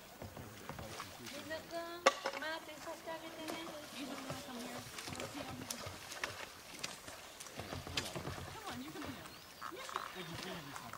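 Indistinct voices calling out over the water, with scattered light knocks and splashes from a kayak paddle.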